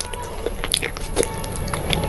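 A person biting and chewing food close to the microphone, with a few sharp, crisp crunches spread through the two seconds.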